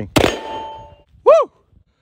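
A single shot from a DSR-1 bullpup bolt-action rifle in .300 Win Mag with a muzzle brake: one sharp crack, then a metallic ring from the AR550 steel target being hit, fading out by about a second in.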